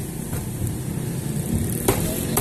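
A single sharp chop near the end, a butcher's cleaver striking a wooden chopping block, over a low steady rumble.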